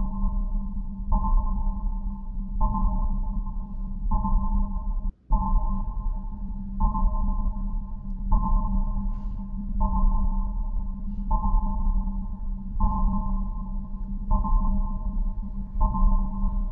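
Background music: a steady low drone under a higher chord that pulses on about every one and a half seconds. It cuts out briefly about five seconds in.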